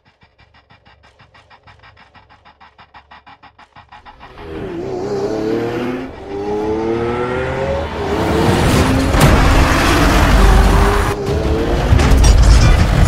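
Dubbed-in sports-car engine sound effect that comes in loud about four seconds in, revving up in several rising steps like gear changes and building into a loud, full drive-by sound. Music plays underneath, and a quiet rapid pulse of about five beats a second comes before the engine.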